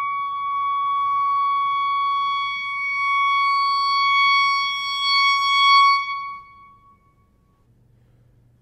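Solo clarinet holding one long, steady high note, swelling a little louder about five to six seconds in, then dying away. The last second or so is near silence before the next phrase.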